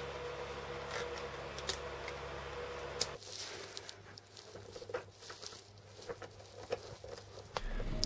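Quiet handling sounds of wiring work: scattered small clicks and taps as wires and small parts are handled, over a steady low hum that stops abruptly about three seconds in.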